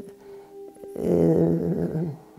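An elderly woman's voice holding a drawn-out hesitation sound, a sustained hum-like vowel, for about a second in the second half, after a short lull.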